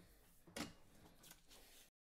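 Faint rustle and scuff of a sheet of paper being handled and slid across a wooden workbench, loudest briefly about half a second in.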